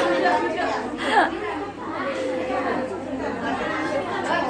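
Young children's voices chattering in a room, with one louder voice about a second in that falls in pitch.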